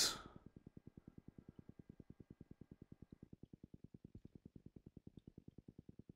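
Near silence: faint room tone with a low, even pulse about ten times a second.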